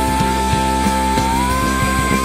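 A woman belting one long, high held note over a live rock band with bass guitar and drums; the note steps up in pitch about one and a half seconds in.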